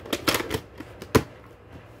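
Plastic handling of a VHS cassette and its clamshell case: a quick run of clicks and rattles as the tape goes into the case, then one sharp snap a little after a second in as the case is shut.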